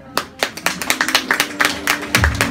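A small group of people clapping: irregular sharp hand claps that begin just after the start and grow thicker, typical of spectators applauding a horse and rider at the end of a show-jumping round.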